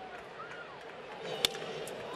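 Crack of a wooden baseball bat hitting a pitched ball for a line-drive home run, one sharp report about one and a half seconds in, over the steady murmur of a stadium crowd.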